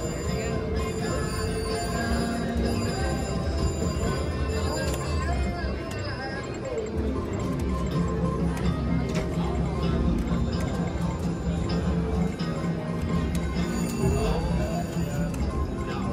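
Casino floor din: electronic jingles and beeping tones from gaming machines over a steady murmur of voices.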